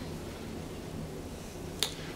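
Steady low hum inside a traction elevator car, with a single sharp click near the end.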